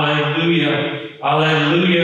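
A priest chanting liturgical words on a nearly steady pitch in a man's voice, with a short break between phrases just after a second in.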